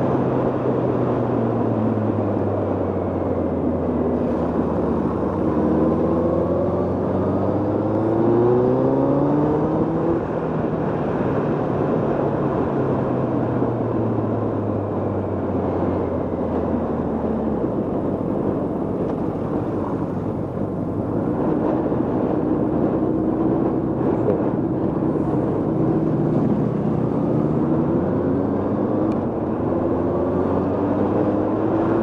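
Motorcycle engine under way, its note rising in a series of short climbs, falling away, then climbing again near the end as the bike accelerates and slows, over steady wind and road noise.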